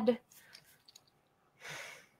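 A short breathy exhale, like a sigh, near the end, after the tail of a spoken word at the start.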